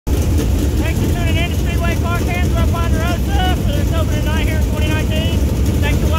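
Dirt late model race car engines rumbling steadily as the field rolls on the track, with a man talking over them.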